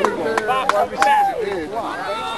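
Indistinct overlapping voices of players, coaches and spectators on a football field, with a few sharp clicks or knocks in the first second.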